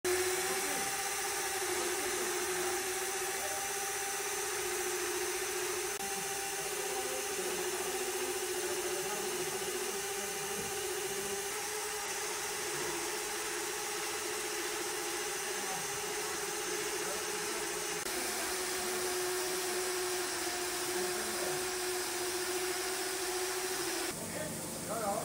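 Hose-fed pneumatic rock drill running steadily against a coal-mine face: a continuous hiss of compressed air over a steady hum that wavers only slightly in pitch.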